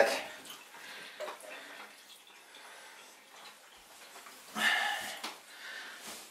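Faint water sounds in a bathtub just after a bath: light dripping and splashing, with small ticks. A short, louder noise comes about four and a half seconds in.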